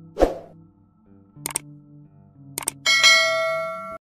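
Subscribe-button animation sound effects: a quick swoosh at the start, a click about a second and a half in and another about a second later, then a bright bell ding that rings out and slowly fades.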